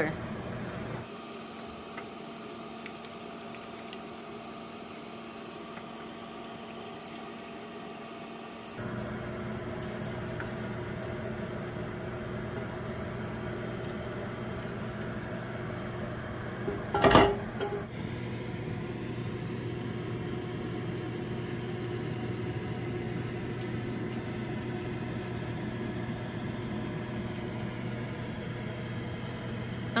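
Steady low hum of background kitchen noise, made of several even tones, stepping up a little about nine seconds in. One sharp knock comes a little past the middle.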